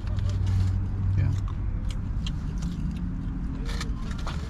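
Aluminium foil sandwich wrapper crinkling as it is handled, over a steady low hum inside a parked car.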